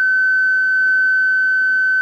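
Steady, high-pitched sine test tone from a loudspeaker. It is the tone generator's signal passing unchanged through two GK IIIb scrambler units that are both switched off, so the original high pitch is restored.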